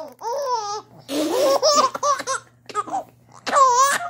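A baby laughing in several short, high-pitched squealing bursts, the loudest one near the end.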